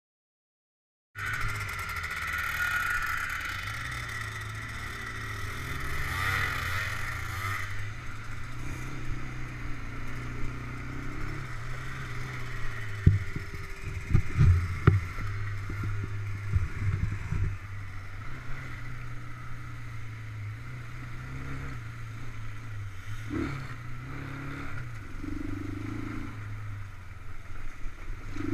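ATV engine running steadily as the quad is ridden along a dirt trail, starting about a second in, with a brief burst of sharp knocks and rattles about halfway through.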